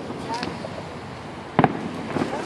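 Distant aerial fireworks shells bursting: a faint pop near the start, then one loud, sharp bang about one and a half seconds in.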